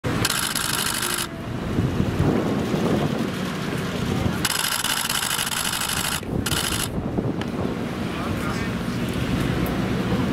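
Street sound with indistinct voices and wind on the microphone, broken by three sudden bursts of loud hiss: about a second long at the start, about two seconds around the middle, and a short one just after.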